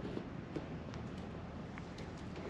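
Low steady background noise with a few faint light clicks from a hand handling a metal engine mount bracket on an engine block.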